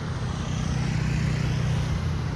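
Street traffic: a motor vehicle's engine running steadily, a low hum over road noise.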